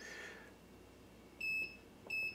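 The key-press beeper (annunciator) of an EPB10K electronic precision balance sounds once, a short high-pitched beep about a second and a half in, as the unit key is pressed. The beeper is still switched on.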